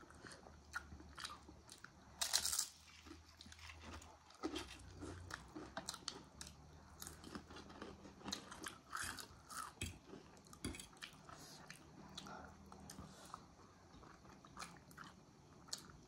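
Quiet close-up eating sounds: chewing of momos (steamed dumplings) and instant noodles, with many small mouth and fork clicks scattered throughout. A brief louder burst comes about two seconds in.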